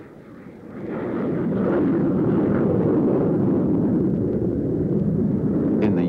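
Aircraft engine roar, rising over the first second and then holding loud and steady.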